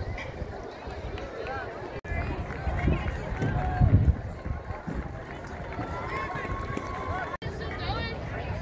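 Unintelligible chatter of many people at a distance in the open air, with a louder low rumble about halfway through. The sound cuts out completely for an instant twice, about two seconds in and near the end.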